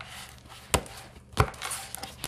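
Oracle cards being handled and laid down on a tabletop: two sharp taps, about three quarters of a second in and again a little over a second in, with soft card rustling between.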